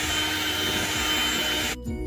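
Electric hand mixer running steadily, its beaters whipping egg batter in a bowl. Near the end the mixer sound cuts off suddenly and background music with separate struck notes takes over.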